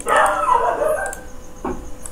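A drawn-out animal call, falling in pitch and lasting about a second and a half, followed by a single click near the end.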